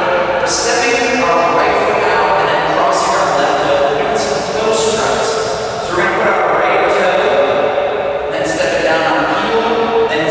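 A voice singing over music, with long held notes and an echoing sound.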